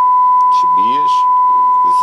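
Steady 1 kHz test tone, a single pure high beep held without a break, fed to the cassette deck to set its recording level: the VU meters sit at about 0 VU.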